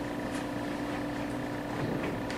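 Steady background hum, with a few faint brief rustles as a nylon camera backpack and its straps are settled on the shoulders.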